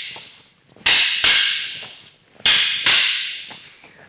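Wooden short sticks (bahng mahng ee) clacking against each other in a partner drill. Two sharp clacks, a pause, then two more, each followed by a long echo: the one-two strikes of the drill's number-two count.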